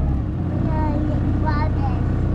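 Small aluminium boat's outboard motor running with a steady, even drone.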